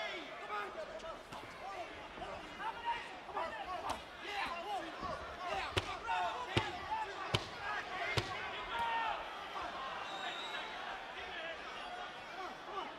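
Shouting voices of cornermen and crowd around a boxing ring, with about five sharp smacks of gloved punches landing between four and eight seconds in.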